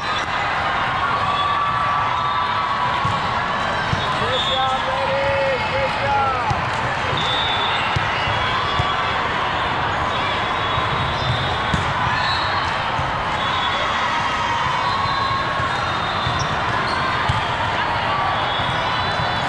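Hall ambience during indoor volleyball play: a steady din of many voices and calls, with volleyballs bouncing and being hit.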